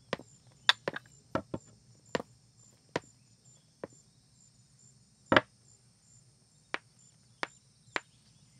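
Footsteps on a wooden floor: about a dozen irregular sharp knocks, the loudest a little past halfway. A faint steady high insect chirring runs behind them.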